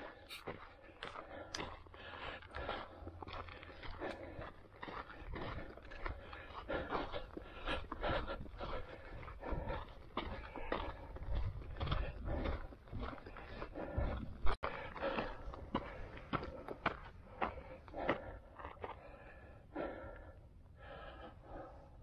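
Footsteps crunching on a dry dirt-and-gravel trail at a steady walking pace as the hiker climbs uphill.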